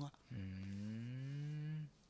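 A man's long, low 'mmm' hum, rising slowly in pitch over about a second and a half: a listener's acknowledging murmur in a conversation.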